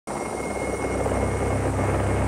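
Helicopter running: a steady engine and rotor drone with a fast, low beat from the rotor blades, starting abruptly just after the opening.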